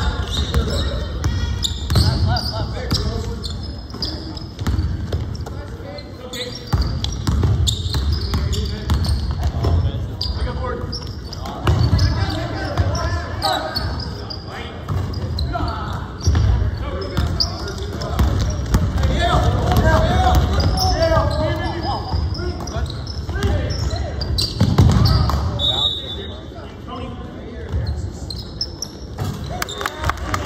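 Basketball bouncing on a hardwood gym floor during play, with players' footfalls and indistinct shouts from the players.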